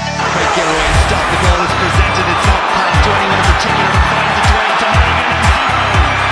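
Electronic dance music with a steady kick drum at about two beats a second, filling out into a dense, full texture just after the start.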